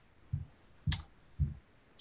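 Three short soft clicks about half a second apart, from a computer mouse as a drawing tool is picked on screen.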